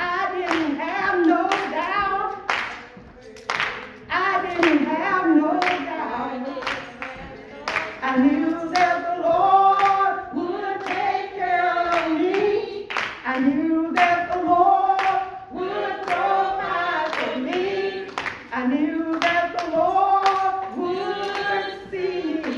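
A woman singing a church song into a microphone, holding long notes that bend and swoop, with hand claps keeping time through it.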